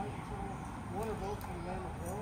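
A person speaking, over steady low outdoor background noise.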